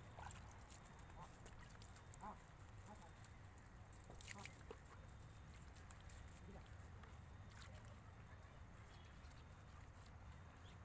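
Near silence: a faint steady low rumble with a few faint, scattered clicks and small sounds.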